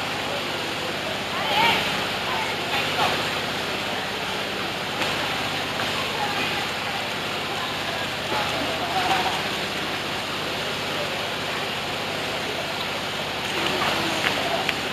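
Steady rush of running water in a bathing pool, with the voices and calls of bathers in the background.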